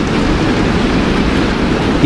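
Sustained applause from a large seated audience, steady throughout and ending abruptly.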